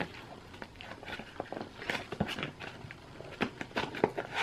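Fingernails picking at and peeling the seal sticker on a small cardboard cosmetics box while it is handled: a run of light, irregular scratches, clicks and rustles.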